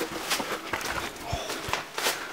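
Shuffling footsteps and clothing rustling against a handheld camera as people walk, with a few small scuffs and light knocks.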